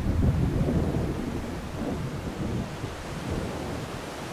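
Low rumble of thunder from a passing thunderstorm, loudest at the start and dying away.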